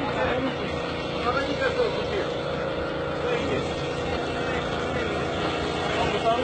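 Farm tractor engine idling steadily, with several people's voices talking over it.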